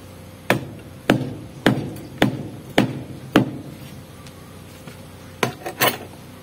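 Hammer blows: six evenly spaced strikes a little over half a second apart, then a quick run of two or three strokes near the end.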